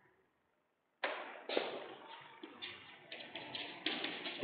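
Chalk tapping and scraping on a chalkboard as an expression is written: a quick series of short strokes that begins about a second in, after a near-silent first second.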